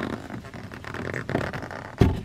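Thick-wall aluminium curtain rod being worked out of its wooden snap-fit block by hand: uneven scraping and rubbing of the tube against the wood, with a low knock at the very end.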